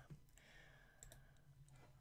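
Near silence with a faint click or two about a second in, a computer mouse click changing the slide.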